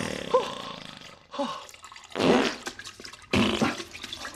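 Comic wet fart sound effects of a man with diarrhea on the toilet: about four short, uneven bursts spread across a few seconds.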